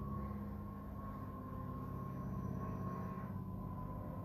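Quiet, steady room tone: a constant low hum with a faint steady high tone over it, and nothing else happening.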